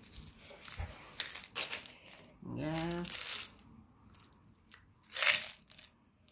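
Crinkling, rustling handling noise with scattered small clicks. A person makes a short hummed 'mm' about halfway through, and a louder rustling rush comes near the end.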